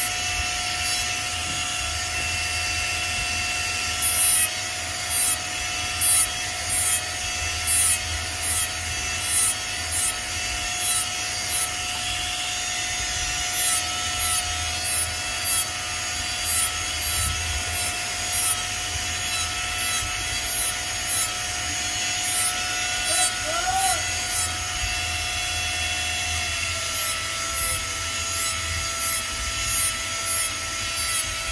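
Jeweller's rotary handpiece with a small burr running with a steady whine while cutting a textured pattern into gold chain links. From about four seconds in, short scraping cutting strokes come about once a second as the burr is drawn across the metal.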